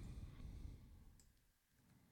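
Near silence: faint low room noise that drops to dead silence after about a second, with a faint click from a computer mouse as text is selected.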